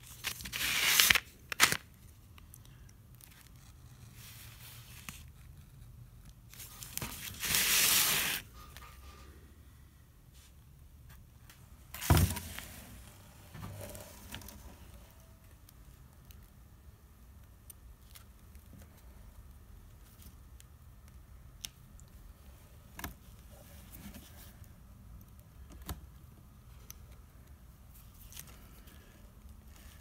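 Craft knife cutting through a paper pattern and sandblast resist on glass: short scratchy, tearing passes, a longer one about seven seconds in, a sharp knock near twelve seconds, then faint scattered ticks.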